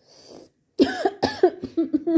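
A person coughing in a quick run of about four coughs, starting just under a second in, after a short hiss of breath.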